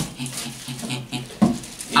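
Light handling noise of small cardboard juice boxes and their straws on a tabletop, with one sharp knock about one and a half seconds in.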